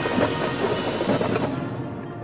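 High school marching band playing, brass and percussion together, heard from high in the stadium stands; the music gets softer about one and a half seconds in.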